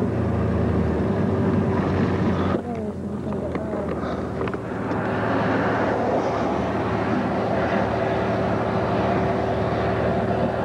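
A motor vehicle's engine running steadily with a low hum, which drops away about two and a half seconds in while a steadier, lighter drone carries on.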